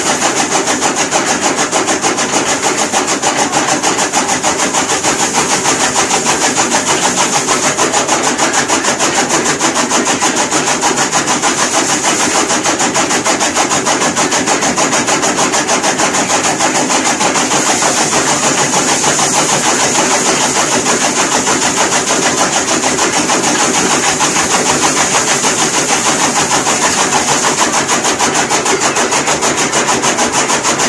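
Small electric chaff cutter running steadily while it chops green fodder and dry stalks fed into it by hand, with a fast, even clatter.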